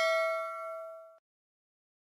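Notification-bell ding sound effect ringing out, several steady bell tones fading and then cutting off abruptly a little over a second in.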